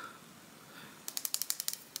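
Fingers handling a small hard-plastic cosmetic jar, making a quick run of about a dozen small clicks in under a second, starting about halfway through.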